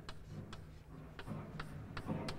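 Chalk writing on a blackboard: a faint series of sharp, irregular ticks, about six in two seconds, as the chalk strikes and drags across the slate.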